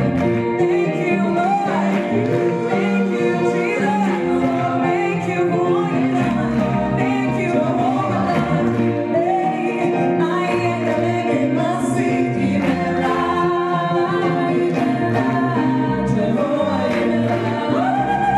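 Gospel music performed live: a choir or vocal group singing over band accompaniment.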